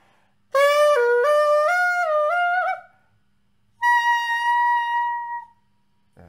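Xaphoon, a single-reed pocket sax, playing a quick run of notes that climbs after an opening dip, then, after a short pause, one long held higher note.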